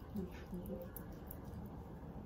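Faint soft rubbing of wet, cleanser-covered hands over the face, with a few short murmured vocal sounds in the first second.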